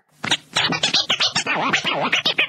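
Rapid, choppy scratching sound effect, a quick run of stuttering, fast-gliding sounds that marks the break between two podcast segments.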